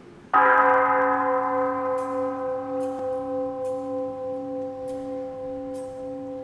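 A single strike on an altar bell, ringing on in several steady tones that waver in loudness as they slowly fade. It is rung at the elevation of the host during the consecration.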